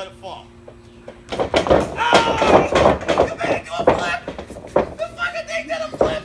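Men's voices laughing and shouting start about a second in, mixed with a run of sharp thumps and slaps, then ease near the end.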